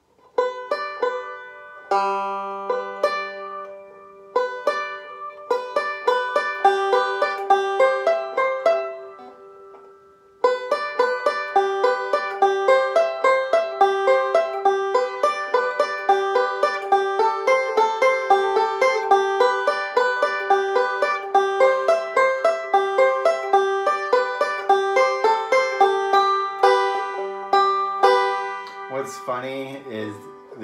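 Five-string open-back banjo being picked, a quick run of plucked notes over a high drone note that recurs all through. About nine seconds in the playing breaks off and the notes ring away. It starts again about a second and a half later and carries on until near the end.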